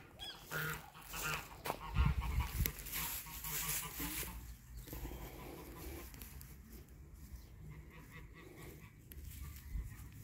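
Geese honking in the background during the first few seconds, with a low thump about two seconds in. It then settles to a faint rustle of straw mulch being pushed aside by hand.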